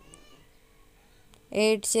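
A faint, brief cry near the start that rises and falls in pitch. A woman's voice reciting numbers starts about one and a half seconds in.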